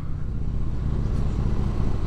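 Harley-Davidson Heritage Softail's Twin Cam 88B V-twin running steadily at low road speed, with road and wind noise.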